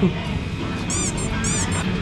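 Restaurant background din with two short, high-pitched chirping squeaks about half a second apart.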